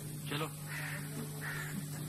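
A crow cawing twice, two short calls about half a second apart, over a steady low hum.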